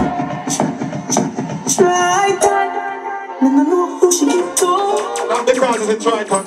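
Loud music: a melody with sharp high percussion strokes, its deep bass dropping out right at the start.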